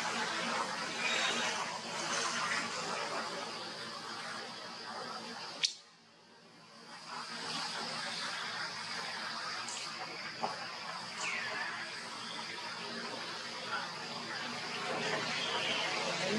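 Outdoor ambience: a steady hiss with a high, steady drone running through it. A sharp click comes about six seconds in and the sound drops away briefly after it. A few short falling chirps come later.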